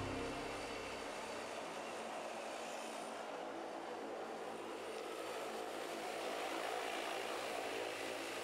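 Turboprop airliner's engines and propellers running steadily as it taxis, growing a little louder in the second half as it approaches.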